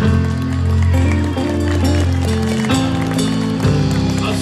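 Live rock band playing an instrumental passage with electric guitar, keyboard, bass and drums. Long held low notes change every second or two under cymbals.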